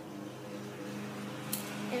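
A steady low hum in a small room, with a faint click about one and a half seconds in.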